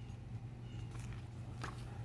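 Faint rustle of a glossy photobook page being handled and turned, with the clearest rustle about one and a half seconds in, over a steady low hum.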